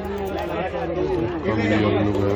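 Indistinct men's voices talking over one another: market chatter with no clear words.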